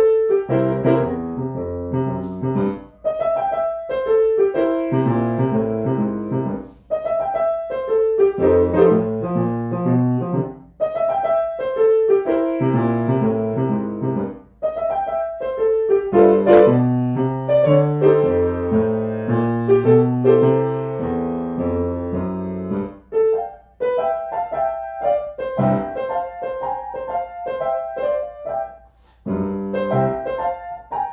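Grand piano played solo: bass notes under a higher melody, in phrases separated by brief pauses.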